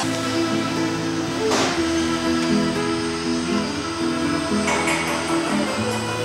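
Background score music with long held notes.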